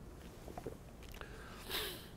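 A man drinking from a plastic water bottle: faint swallowing with small clicks and crinkles of the bottle, and a brief breathy hiss near the end.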